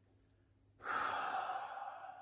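A man's long sigh: a breathy exhale that starts about a second in and slowly fades away.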